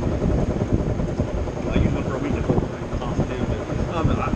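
Low, uneven rumble of wind buffeting the microphone, under faint, muffled talk.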